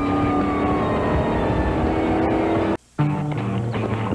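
Car engine sound mixed with music, with a steady drone and a tone sliding slowly down in pitch. About three seconds in it cuts off to a brief silence, then different music starts.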